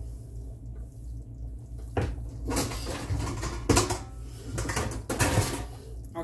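Kitchen cupboard opened and mixing bowls clattering and knocking together while a stainless steel mixing bowl is searched out, the knocks starting about two seconds in.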